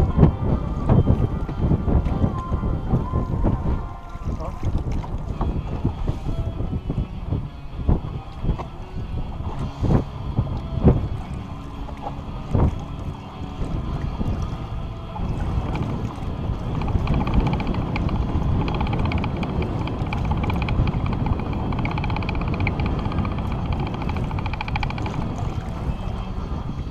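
Wind buffeting the boat-mounted camera's microphone, with a few sharp knocks on the boat in the middle. Water splashes alongside the hull in the second half.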